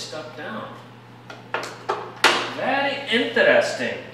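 A plastic trim tool prying at a truck's plastic rocker sill trim, with a few sharp clicks and knocks about halfway through, the loudest just after the middle, alongside muttered speech.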